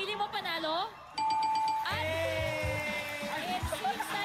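A short speaking voice, then about a second in a single held chime note like a doorbell, followed by a music sting with sustained tones and low bass hits: a game-show reveal sound effect.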